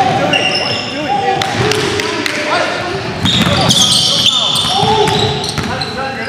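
Basketball bouncing on a hardwood gym floor, with rubber-soled sneakers squeaking on the court in short, high-pitched squeaks several times over.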